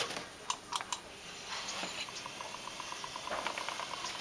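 Hansen Mini-spinner electric spinning wheel with a WooLee Winder flyer running briefly to put more twist into the yarn: a few clicks, then a quick, even ticking for about two seconds.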